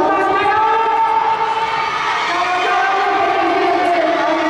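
Track-meet spectators shouting and cheering, many voices overlapping in long, drawn-out yells.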